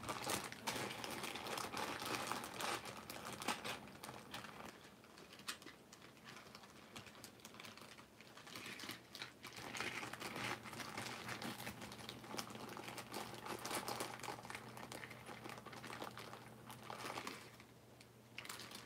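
Hands rummaging through bags and containers of craft supplies: a run of crinkling, rustling and small clicks, easing off for a few seconds near the middle before picking up again.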